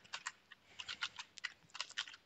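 Computer keyboard typing: a quick, irregular run of light keystroke clicks.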